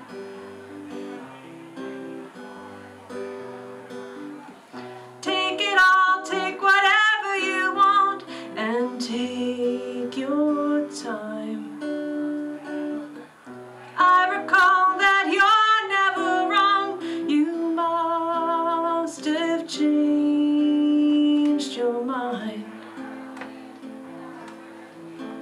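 Solo steel-string acoustic guitar playing steadily between verses, with a woman's voice coming in on long sung notes with vibrato about five seconds in and again about fourteen seconds in.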